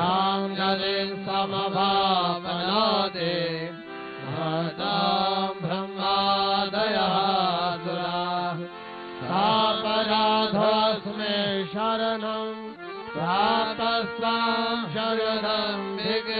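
Male voices chanting Sanskrit hymn verses to the Goddess in a sung melody, phrase after phrase with short breaths between, over a harmonium holding steady notes.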